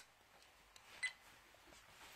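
Near silence with one short click about a second in, a button on a handheld dash cam being pressed, and a few fainter ticks around it.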